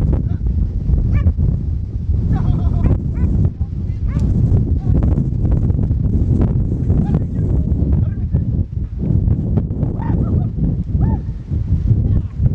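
Strong wind buffeting the microphone, a constant low rumble that fills the recording. A few short calls rise above it about two and a half seconds in and again near ten seconds.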